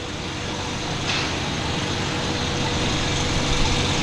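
Street traffic: a motor vehicle's engine and tyre noise growing steadily louder, with a faint steady hum underneath.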